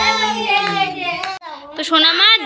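Baby crying in long, high wails, breaking off for a breath about one and a half seconds in before starting again.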